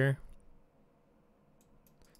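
Near silence: faint room tone, with a few faint computer mouse clicks near the end.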